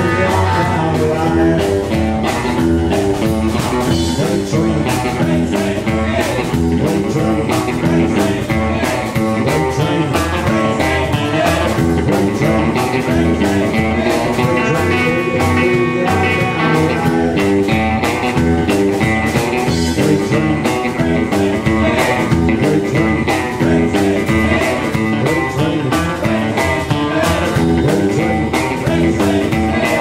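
A live trio playing an up-tempo boogie: a hollow-body electric guitar over an upright double bass, with a steady driving beat.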